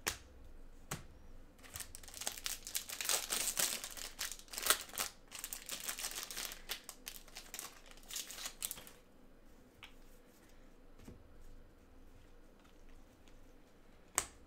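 Foil wrapper of a trading-card pack being torn open and crinkled by gloved hands, a dense crackle from about two seconds in until about nine seconds in. A couple of sharp taps come in the first second.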